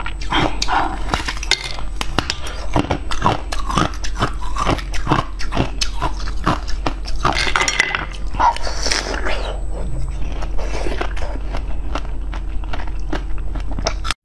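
Close-miked chewing and wet mouth sounds of someone eating jelly and strawberries: a run of short wet clicks and squelches, about two a second through the middle, with a brief noisier burst of chewing near the two-thirds mark.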